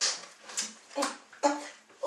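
A man's short, breathy vocal sounds, four in quick succession about half a second apart.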